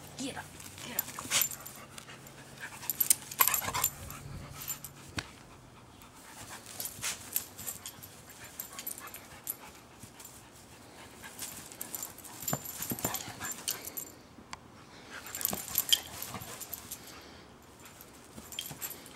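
A dog at play, making short intermittent sounds in scattered bursts with pauses between them.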